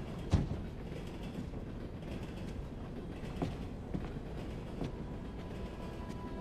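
Creaking and a few dull knocks from footsteps on wooden floorboards, over a low steady rumble. The sharpest knock comes about a third of a second in.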